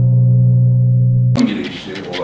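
A sustained, gong-like tone from a logo sting, loud and steady with a low hum and many overtones, cut off abruptly a little over a second in. A man's voice follows in a small room.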